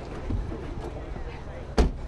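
Voices and bustle of people running between parked cars during an action take, with one loud thump near the end, like a body or hand striking a car.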